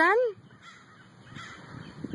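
A woman's voice asking "done?" with a rising pitch right at the start, then low outdoor background noise.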